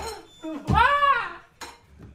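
Short high-pitched vocal cries that rise and fall in pitch, followed by a single sharp click or knock near the end.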